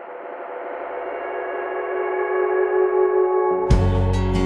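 Background music: a sustained ringing chord swells steadily louder from silence. Near the end, a beat with drum hits and heavy bass comes in.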